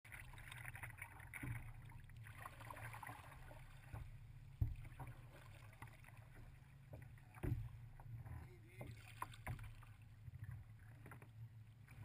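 Kayak on the water heard through a GoPro's waterproof housing: a steady, muffled low rumble of water and wind on the hull, with scattered knocks from paddling, the loudest about four and a half seconds in.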